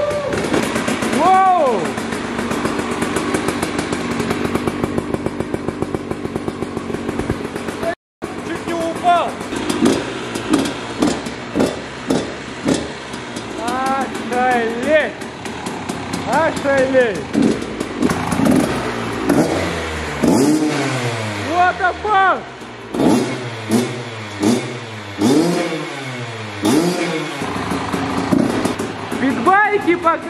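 Koshine 150 two-stroke enduro engine running just after a kick start: a steady, even idle, then after a short gap repeated throttle blips with the revs rising and falling.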